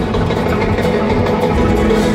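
Loud live rumba flamenca band playing: strummed acoustic guitars over drums and congas, heard through the audience's phone with a heavy low rumble.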